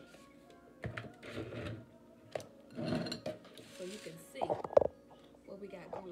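Kitchen handling sounds from a jar, spoon and bowl: a few clinks and scraping patches, with one sharp knock a little before the end.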